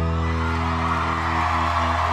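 Live pop-rock band holding a sustained final chord at the end of a song, with the studio audience starting to cheer and applaud about half a second in.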